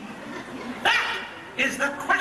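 Dog barks played over a show's sound system, two sharp yelps, one a little under a second in and one near the end.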